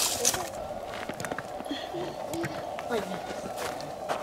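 Faint, indistinct voices in short snatches, with scattered clicks and knocks over a steady hiss.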